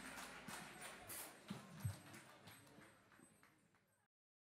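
Faint scattered applause and crowd noise from an audience, with a few separate hand claps, fading out to silence near the end.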